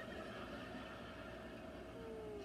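Quiet room background noise with a faint, steady high hum and no distinct event.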